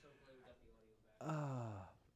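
A man's long, breathy sigh, an 'ahh' falling in pitch, a little over a second in, after a faint murmured 'so'.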